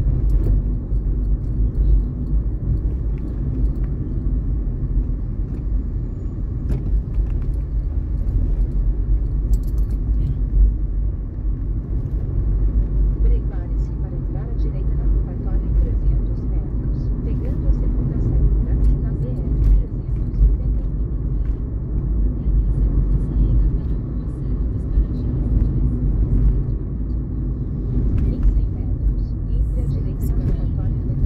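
Steady low rumble of a car's engine and tyres on the road, heard from inside the cabin while driving through town.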